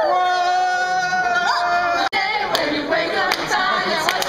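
Two voices holding one long sung note together, which cuts off abruptly about two seconds in. Then a group singing and shouting excitedly, with scattered hand claps.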